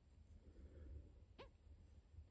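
Near silence: room tone, with one brief faint tick a little after the middle.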